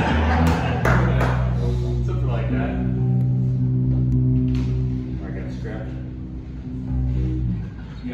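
Fretless electric bass playing a few long held low notes through the amplifier, the last one sustained for several seconds before stopping near the end. A few people laugh at the start.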